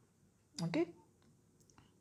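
Mostly speech: a man says a short "okay", then a few faint, light clicks near the end.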